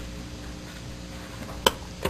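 Quiet, steady background hum and hiss, with one sharp click near the end.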